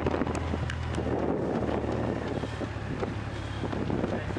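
Wind buffeting a moving camera's microphone: a steady low rumble with a rough rustling haze over it.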